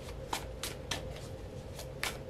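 A deck of oracle cards being shuffled by hand, a run of short, light card slaps at an uneven pace of about two or three a second.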